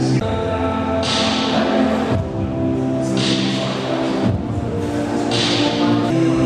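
Music with sustained, held chords over a bass line, with a hiss-like swell about every two seconds.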